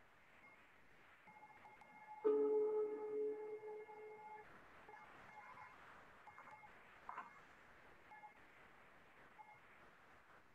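Quiet film soundtrack music of held, sustained tones heard over a screen-share. One note swells up about two seconds in, is the loudest part, and fades out a couple of seconds later, while fainter held tones come and go.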